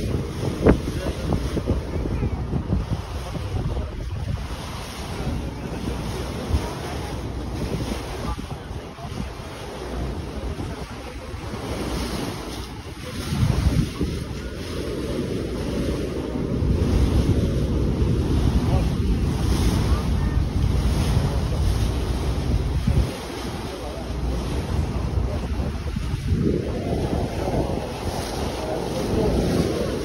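Wind buffeting the microphone on the deck of a moving ferry, over the rush of water past the hull. The rumble swells up about halfway through and again near the end.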